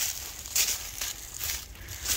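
Footsteps on dry pine needles and leaf litter, a step about every second.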